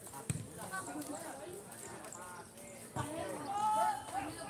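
Several voices calling and shouting, with a strong sustained call near the end. Two short dull thuds come through, one just after the start and one about three seconds in.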